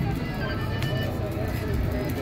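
Busy outdoor plaza ambience: a background murmur of people talking over a low, steady rumble, with a single click about a second in.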